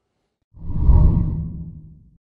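A deep whoosh sound effect marking the transition to an animated outro: it swells about half a second in and fades out over the next second and a half.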